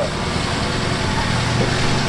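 Small four-cylinder car engine idling steadily.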